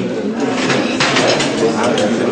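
Many people talking at once around dining tables in a loud, steady murmur of overlapping voices.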